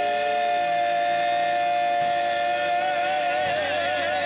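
Gospel praise singers and keyboard holding one long sustained chord, the pitch starting to waver into vibrato about three seconds in.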